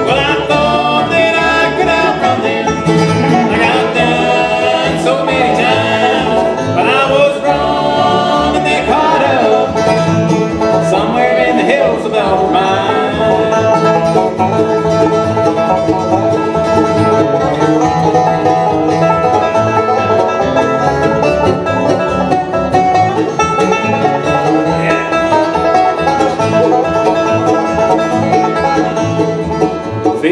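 A bluegrass band playing live: banjo, mandolin, acoustic guitar and upright bass together at a steady tempo.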